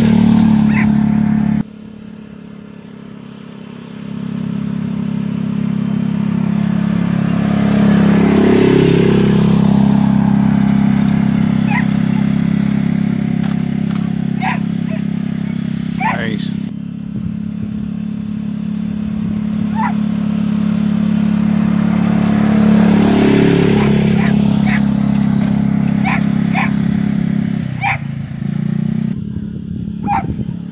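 Polaris Ranger side-by-side's engine running with a steady drone as it tows a roping dummy, swelling and easing with the throttle. The engine sound drops off abruptly a couple of seconds in and comes back about two seconds later.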